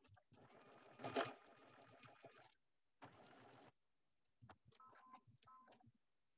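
Sewing machine stitching in two runs, one of about two seconds with a sharper click about a second in, then a shorter run under a second, followed by a few light clicks.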